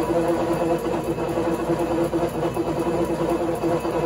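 Coil winding machine running steadily, its winding head spinning to wind enamelled copper magnet wire onto the coil forms: a steady machine hum with a fast, even pulse from the rotation.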